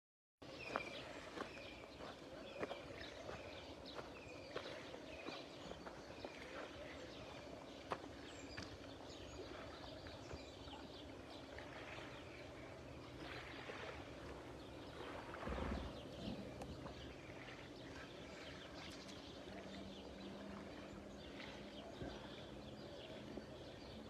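Faint outdoor ambience with a bird repeating a short chirp about every half second through the first several seconds, and a low dull bump about fifteen seconds in.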